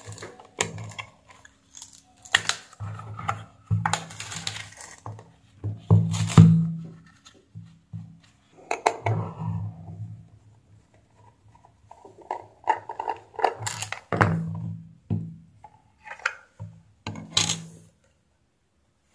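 Handling sounds from a plastic multimeter case: irregular clicks, taps and knocks as a screwdriver undoes the battery-cover screw and the cover is lifted off. There is a quieter stretch near the middle.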